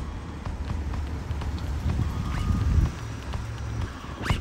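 Footsteps on asphalt with a low, uneven wind rumble on the microphone.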